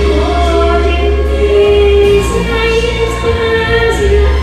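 A woman singing a Chinese pop song into a handheld microphone over instrumental backing music, holding one long note through the first second and a half.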